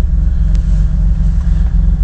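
BMW E30 325i's 2.5-litre straight-six idling steadily, heard from inside the cabin as a low, even rumble.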